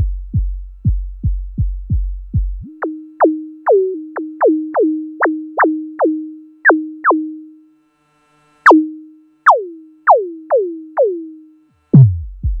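Drum-synth patch on an Axoloti Core board playing a beat: deep synthesized kick-like thuds, each dropping in pitch, about two and a half a second. A couple of seconds in, the sound is retuned to a held tone under sharp zaps that sweep quickly down in pitch. These stop for about a second near the two-thirds mark, then resume.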